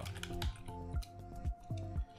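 Computer keyboard being typed: a quick run of separate key clicks as a short word is entered, over soft background music.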